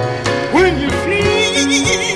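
Live gospel music: a voice swoops upward and wavers in wide vibrato over sustained organ-like chords, with bass and drums underneath.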